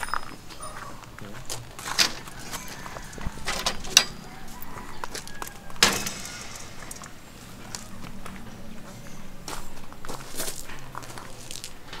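Footsteps with several sharp clicks and knocks, the loudest about four and six seconds in.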